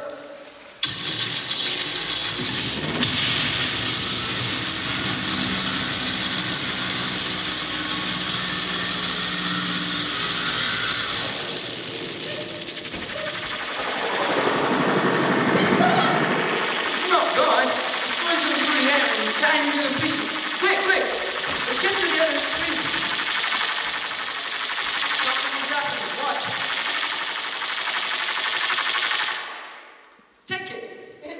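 Recorded machine sound effect for a stage laser transmitting a chocolate bar, played over a hall's loudspeakers. It is a loud steady whooshing hum that starts about a second in and sweeps down and back up midway. After that it breaks into choppy voice-like sounds and cuts off abruptly near the end.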